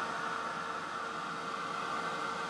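Handheld craft heat gun running steadily, blowing hot air: an even rush of air with a faint constant hum. It is heating QuickCure clay in a silicone mould to set off the clay's curing reaction.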